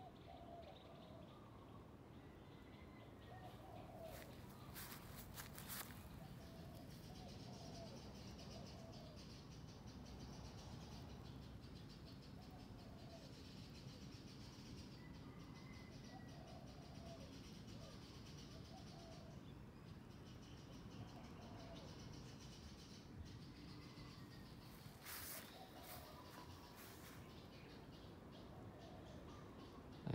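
Quiet outdoor ambience with birds chirping faintly now and then, and a few brief clicks about five seconds in and again near the end.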